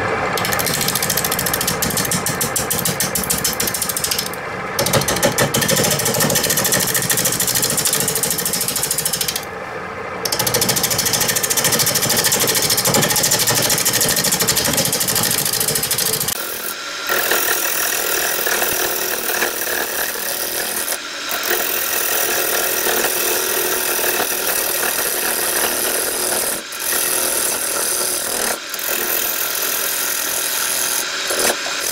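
Turning tool cutting a spinning carrot wood bowl blank on a wood lathe: a steady, noisy cut over the lathe's running hum, broken by several brief pauses as the tool lifts off. About halfway through the cut loses its low end and turns lighter and higher.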